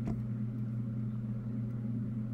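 Steady low background hum with one short click right at the start.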